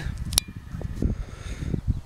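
Wind buffeting a hand-held camera's microphone outdoors: an uneven low rumble, with one sharp click about half a second in.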